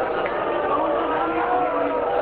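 A man's voice through a microphone and loudspeakers, chanting in long, held, wavering notes rather than ordinary speech.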